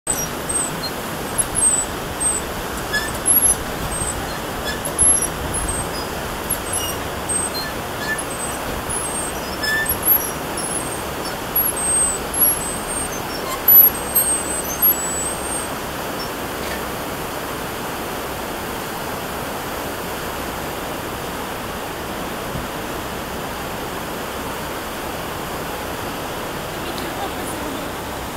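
Steady rush of water pouring through an opened canal-lock paddle (sluice), with short high-pitched chirps scattered through the first half.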